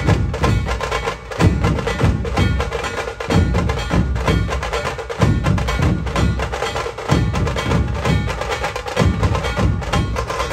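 Dhol-tasha ensemble playing: rapid, dense tasha stick strokes over heavy dhol beats that fall about once a second.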